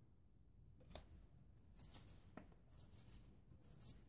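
Faint rustling of cardstock journaling cards being handled and swapped by hand, with a light click about a second in.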